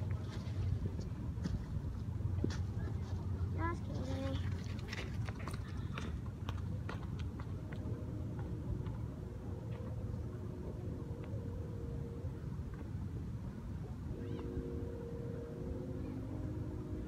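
Outdoor ambience with a steady low rumble, a few scattered knocks and a brief voice early on. From about halfway a steady low hum joins in.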